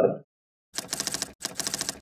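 Typewriter sound effect: two runs of rapid key clacks, each a little over half a second long, starting just under a second in, as typed text is revealed.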